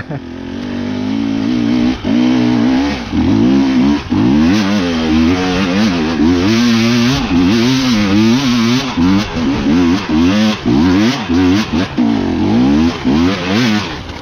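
Enduro motorcycle engine revving hard in repeated bursts of throttle, its pitch rising and falling with each burst and dipping briefly between them, as it claws up a steep slope of loose leaves. A sharp knock comes right at the start.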